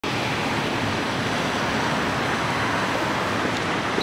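Steady rushing noise of city street traffic, even and unbroken throughout.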